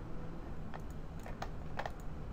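Clicking of a computer mouse and keyboard: about five short, sharp clicks, the last two close together, over a low steady hum.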